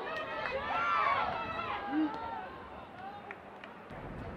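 Several voices shouting and calling out across an open sports field during play, loudest about a second in, with no clear words.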